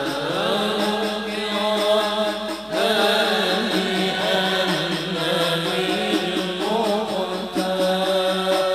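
Large group of male voices chanting an Arabic qasidah together in a slow, winding melody over a steady low held note, with a brief dip between phrases about three seconds in.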